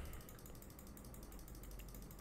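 Faint computer keyboard key presses in quick succession, stepping a debugger through code.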